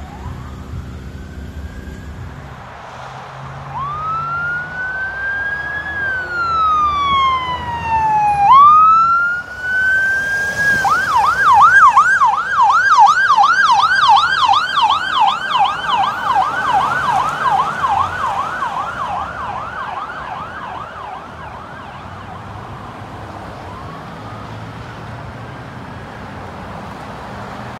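Ambulance's electronic siren: a slow rising and falling wail that switches to a fast yelp of about three cycles a second, loudest as it goes by and then fading away over several seconds.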